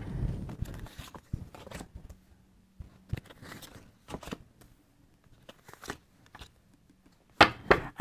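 Oracle cards being drawn from a deck and laid on a wooden table: soft rustling and sliding, then scattered light taps, with a couple of sharper clicks near the end.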